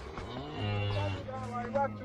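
A cow mooing: one long, low moo that starts about half a second in and holds for about a second and a half.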